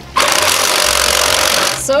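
Cordless reciprocating saw running with its blade sawing through a plastic Rubik's Cube, loud and steady. It starts just after the beginning and stops shortly before the end.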